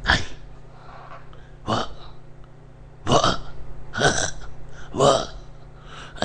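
A man's voice making about five short, loud non-word vocal sounds, spaced a second or so apart.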